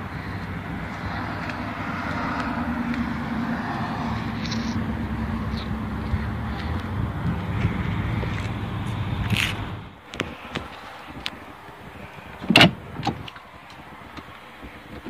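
A car engine running steadily with a low hum, which cuts off abruptly about ten seconds in. Near the end there is a single sharp knock, like a car door being opened.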